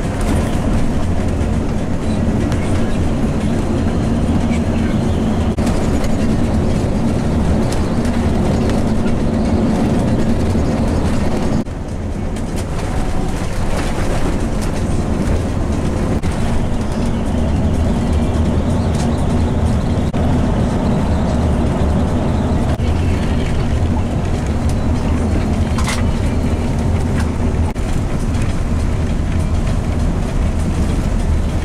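Steady engine drone and tyre rumble heard inside a coach cabin at highway speed, dipping briefly about twelve seconds in.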